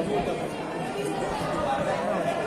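Several overlapping voices of young players and onlookers chattering and calling out at once, with no single speaker standing out.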